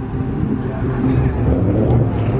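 Car engines running, mixed with people talking nearby: a steady low rumble under broken chatter.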